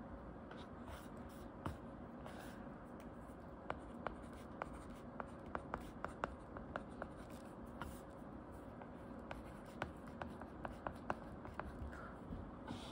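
Plastic tip of an Apple Pencil-dupe stylus tapping and ticking on a tablet's glass screen while writing notes: faint, sharp little ticks in irregular runs, densest in the middle and near the end.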